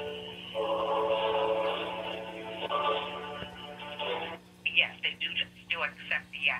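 Telephone hold music playing through a smartphone's speaker, thin and cut off in the treble like a phone line. About four and a half seconds in it gives way to a run of short, choppy sounds from the line.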